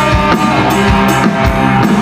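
Live rock band playing: a drum kit keeps a steady beat under electric and acoustic guitars.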